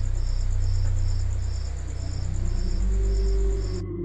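Crickets chirping, a high pulsing trill repeating about twice a second over a low steady hum, cutting off abruptly near the end.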